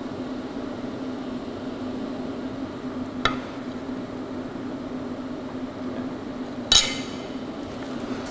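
Aluminum plate set down and handled on a steel welding table: a light metallic click a few seconds in, then a louder ringing clink near the end, over a steady low hum.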